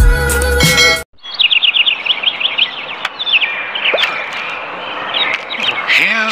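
Upbeat intro music that cuts off about a second in, followed by birds chirping: rapid runs of short falling chirps, several a second, coming in bursts over a faint hiss.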